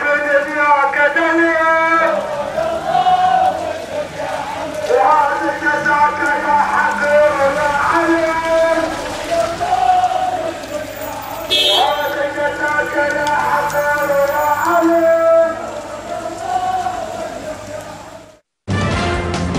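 A voice chanting in long, melodic held phrases with short pauses between them, with a brief hiss about eleven and a half seconds in; it fades out over the last couple of seconds.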